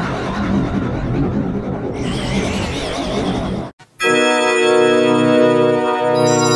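Station logo music altered by effects. For the first three and a half seconds it is a dense, warbling smear. After a brief drop-out it becomes a held, organ-like synthesizer chord.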